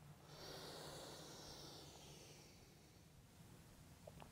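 A faint, slow breath in, a soft hiss that fades out about two seconds in. It is the deliberate inhale of a yoga cat-cow stretch, drawn as the back arches.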